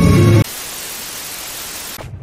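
Cartoon background music cuts off about half a second in, followed by a steady, even hiss of static-like white noise that stops abruptly at the end.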